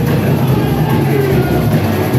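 Loud live samba music: a samba school's drum section playing dense, low drumming, with a melody line faintly over it.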